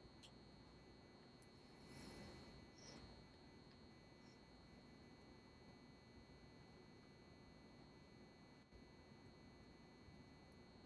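Near silence: room tone with a faint steady high-pitched tone.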